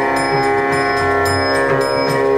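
Live Indian devotional instrumental music: a violin and other held notes sounding over a steady beat of light percussion strokes, about three to four a second.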